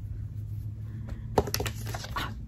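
A few light clicks and taps of small items and packaging being put back into a cardboard box, the sharpest about one and a half seconds in, over a steady low hum.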